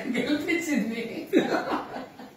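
Voices talking with a woman chuckling and laughing.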